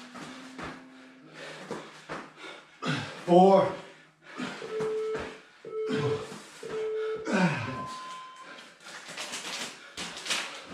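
Interval timer counting down the end of a work interval: three short beeps at one pitch about a second apart, then a longer, higher beep. A loud vocal exclamation from an exerciser about three seconds in is the loudest sound, with further voice near the end.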